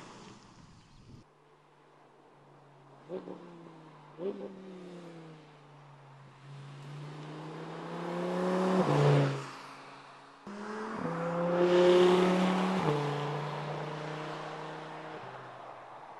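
Audi R8 Spyder's V10 engine as the car drives a winding road: two short rev blips a few seconds in, then the engine note rising and swelling as the car approaches and passes about nine seconds in. It comes back abruptly louder at about ten and a half seconds, peaks, steps down in pitch with a gear change, and fades as the car draws away.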